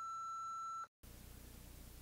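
Answering machine beep: a single steady tone of just under a second, sounding at the end of the outgoing greeting to signal the start of recording. It cuts off sharply, leaving faint room tone.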